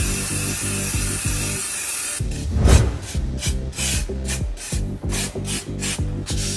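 Aerosol copper grease spraying in one steady hiss for about two seconds. A quick run of short rubbing strokes, several a second, follows.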